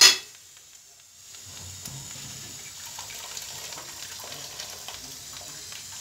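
A brief loud burst right at the start. Then, from about a second and a half in, the steady bubbling hiss of a large aluminium pot of liquid boiling on a gas stove.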